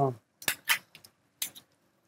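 A spoon knocking and scraping against a cooking pot while stirring: about five short, sharp clicks spread over the first second and a half.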